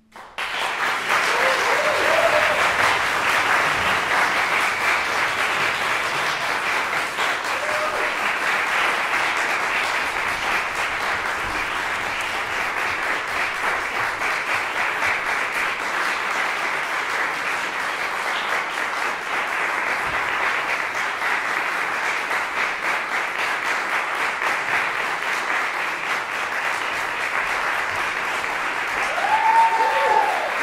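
Audience applause breaking out right after the final chord and running on steadily, with a few short calls rising above the clapping, the last and loudest near the end.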